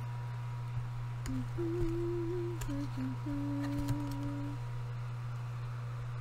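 A woman humming a few low, held notes, stepping between pitches, for about three seconds in the middle, while oracle cards are handled with a few soft clicks.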